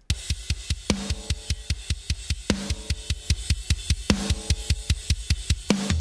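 Metal drum kit played back from a mix: a rapid double-kick bass drum pattern with a snare hit about every second and a half over cymbal wash. The drums run through parallel compression with slight saturation distortion that adds edge to their attack.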